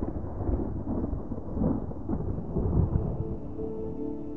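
Low rumbling noise in the background soundtrack, swelling and falling unevenly, with soft sustained ambient music tones coming in near the end.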